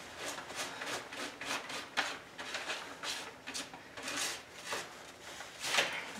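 A large spatula spreading clay-based wallpaper paste over the back of a crumpled brown-paper sheet, a series of quick scraping strokes, a few a second.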